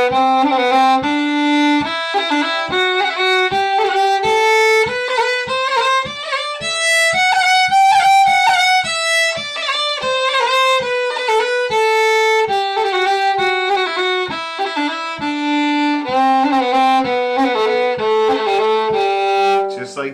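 Solo fiddle playing a slow scale exercise, stepping up and then back down, with a roll ornament on each note, the way Irish-style rolls are practised.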